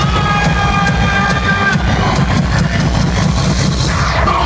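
Loud live dubstep DJ set over a concert sound system, heard from within the crowd: a heavy, steady bass with regular drum hits. A high synth chord is held for about the first two seconds.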